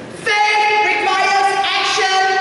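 A woman singing long, steady held notes into a microphone.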